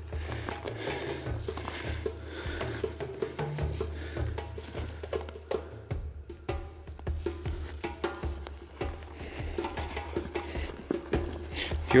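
Footsteps and rustling through dry grass and brush, with many small irregular crunches, over quiet background music with a low bass line.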